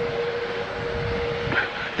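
Steady outdoor street noise with a faint, even hum running through it that fades out about one and a half seconds in.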